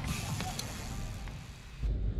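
Trials bike rolling on concrete with its rear freewheel hub ticking, fading away. Near the end the outdoor sound cuts off to a quieter room hum.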